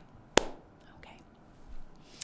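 A single sharp click about a third of a second in, amid faint breathy sounds in a pause of a woman's speech.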